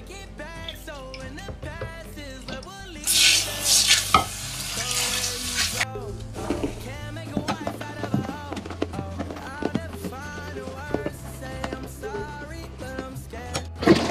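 Toilet-bowl cleaner fizzing and foaming in the bowl water as it is stirred with a toilet brush, with a loud hiss of fizzing from about three to six seconds in. Background music plays throughout.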